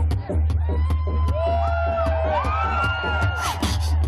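Live beatboxing into a microphone: a steady beat of sharp clicks and snare sounds over a constant deep bass. In the middle come sliding, whistle-like vocal effects that rise and fall.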